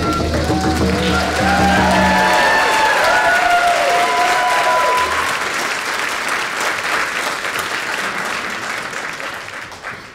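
A raven song with hand drum and singing ends about two seconds in, voices call out over it, and an audience applauds, the applause dying away near the end.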